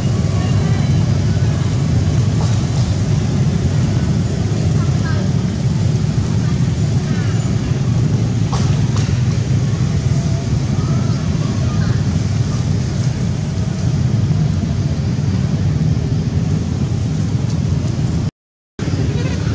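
Steady low rumbling outdoor noise, with faint short chirps now and then.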